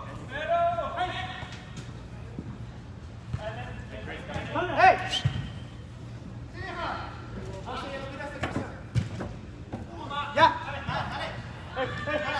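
Players' shouts and calls ringing out in a large indoor soccer hall, with a few sharp thuds of the ball being kicked.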